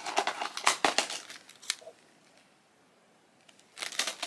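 Small plastic items being handled: crinkling and clicking of a card of plastic hair clips and a little plastic container, a quick flurry of clicks for about two seconds, a short pause, then more clicks near the end.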